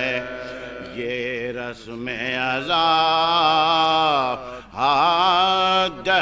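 Male reciters chanting soz, a mournful Urdu elegy, in long held notes that glide and waver in pitch. The chant pauses briefly for breath about a second in, near two seconds and again around four and a half seconds.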